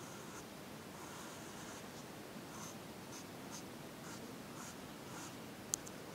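Pencil scratching faintly on paper in short, repeated sketching strokes. A single sharp click comes near the end.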